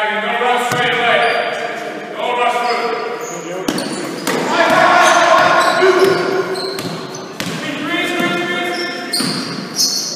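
A basketball bouncing on a wooden sports-hall floor as a player dribbles, under the shouts and calls of players and people courtside.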